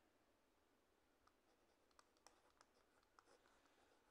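Near silence: room tone, with a handful of faint ticks in the second half from handwriting on a digital whiteboard with a pen or stylus.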